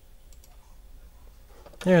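A computer mouse double-clicked once, faint and sharp, over a low steady hum; near the end a man's voice says "there".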